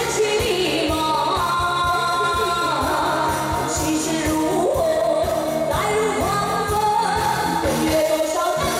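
A woman singing into a microphone over an amplified pop backing track with a steady drum beat.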